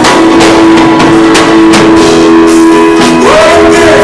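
Loud live gospel band music: a drum kit keeping time with regular drum and cymbal hits under guitar and held chords, with a voice singing a note that bends near the end.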